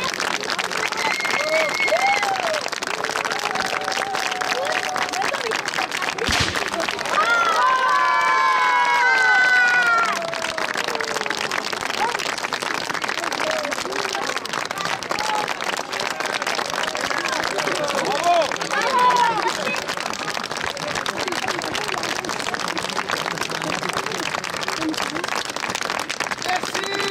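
Outdoor audience applauding steadily. A single sharp crack comes about six seconds in, and loud cheering shouts rise and fall from about seven to ten seconds in.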